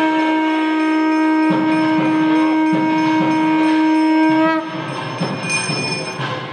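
A conch shell blown in one long, steady, unbroken blast that stops about four and a half seconds in, over the hubbub of a crowd.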